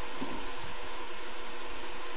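Steady, even hiss of a covered skillet of sauce simmering on the stove, with a faint hum under it.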